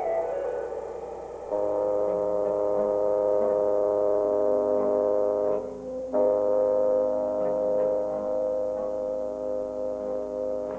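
Film score: the tail of a falling run of notes, then a long held chord of several steady tones that cuts out briefly about six seconds in and is sounded again.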